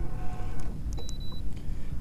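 A short, high electronic beep about a second in, over a steady low rumble.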